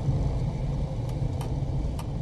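A car driving slowly, heard from inside the cabin: a steady low rumble of engine and road noise, with two faint clicks a little after the middle.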